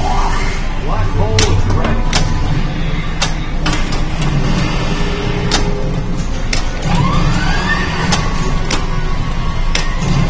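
Star Trek pinball machine in play: its game music and effects running, with sharp clacks of flippers and the ball striking targets throughout, and a swooping electronic effect about seven seconds in.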